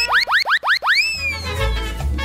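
Radio show jingle: a quick run of short, rising boing-like sweeps, then one longer sweep that slowly slides down, with a low bass note coming in about halfway through.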